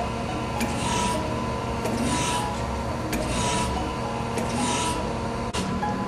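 ACER AGS surface grinder with its hydraulic system running and the table traversing under hydraulic drive: a steady hum with a faint high tone, and a rushing swish that repeats about every second and a quarter.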